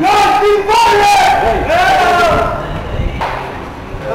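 Loud shouting voices: about three long, high yelled calls in the first two and a half seconds, trailing off after that.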